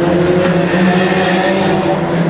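A motor vehicle's engine running steadily at a low, even pitch, with a couple of light clicks in the first half second.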